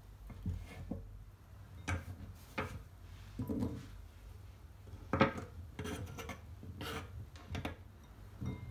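Serrated knife cutting through cheese and knocking on a wooden cutting board, then small cheese cubes being scooped up by hand and dropped into a ceramic bowl. The sound is a series of irregular knocks and scrapes, with the sharpest knock about five seconds in.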